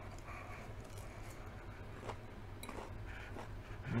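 Faint chewing of a forkful of lettuce salad: a few soft, scattered crunches and mouth sounds over a low steady hum.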